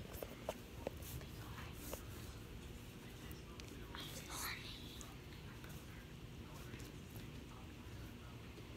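Soft whispering over a low steady hum, with a few sharp clicks in the first second and a short breathy whisper about four seconds in.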